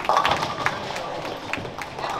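Bowling centre din: background voices talking, with several short sharp clacks scattered through.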